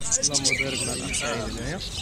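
People talking over the high chirping of many caged small finches and budgerigars.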